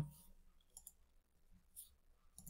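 Near silence with a few faint, brief computer mouse clicks.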